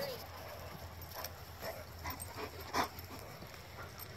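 A dog barking several short times, the loudest bark a little before three seconds in.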